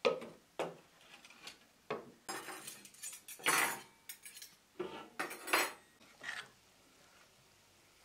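Metal plates, a metal tray and cutlery being set down on a wooden table: a run of clinks and clatters over the first six and a half seconds, the loudest at the very start and at about three and a half and five and a half seconds in.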